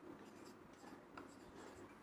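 Faint strokes of a marker pen on a whiteboard: a few short, soft scratches against near silence.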